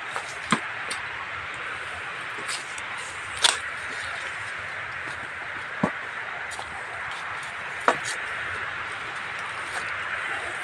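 Steady, even hiss of forest background sound, broken by a few sharp knocks or snaps spaced a couple of seconds apart.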